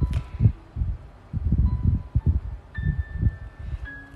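Hands pressing and moving on the page of a spiral-bound printed book, giving an uneven run of soft low thumps and rubs. A few faint, thin, steady high tones come and go over it.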